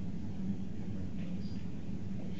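Steady low room hum, with a few faint small sounds about a second and a half in.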